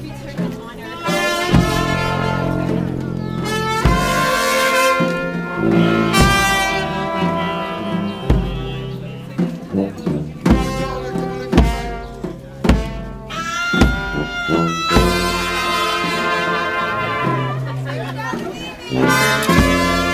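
New Orleans brass band playing a slow dirge: long held trumpet, trombone and tuba notes over widely spaced bass drum beats.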